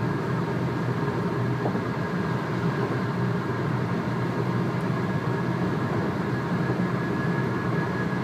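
Steady low rumble of a car heard from inside the cabin, engine and road noise with no change in level.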